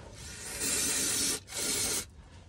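Aerosol spray can fired through a straw nozzle at the underside of a transmission case: a hiss that builds and holds for about a second, a brief break, then a second shorter burst.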